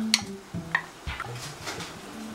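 A wooden spoon scraping tomato sauce out of a bowl into a saucepan: a few soft clicks and taps of spoon on bowl.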